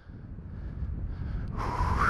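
Wind rumbling on a helmet-mounted microphone, growing louder as the rider rolls in on an electric unicycle. Near the end a breathy vocal whoop rises in pitch.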